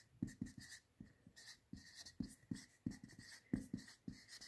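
Whiteboard marker writing on a whiteboard: a quick, irregular run of short pen strokes as letters are drawn.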